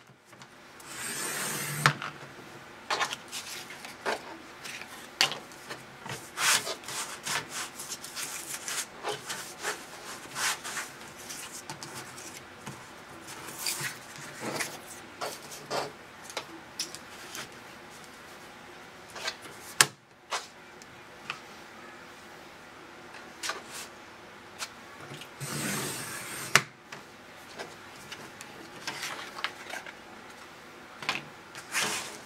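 Sliding-blade paper trimmer cutting glitter craft paper into strips, with paper rubbing and sliding as the sheet is repositioned, and small clicks and taps. Two longer scraping strokes, about a second in and near the end, stand out from the shorter rubbing sounds.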